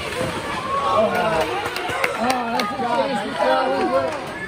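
Indistinct chatter of spectators at an ice hockey rink, several voices overlapping, with a few sharp clacks from the play on the ice.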